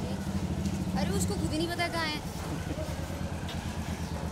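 A vehicle engine running steadily in street traffic, a low even hum, with people's voices over it about a second in.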